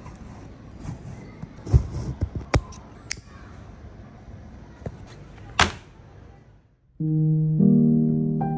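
Light clicks and knocks from hand-saddle-stitching a leather case and handling a lighter over a low hiss, with a sharper click about five and a half seconds in. After a brief drop in sound about seven seconds in, soft piano-like music with sustained notes begins.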